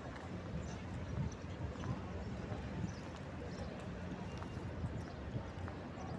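Footsteps on stone paving, picked up by a handheld phone while walking: an uneven run of soft low thumps over a steady low rumble on the microphone.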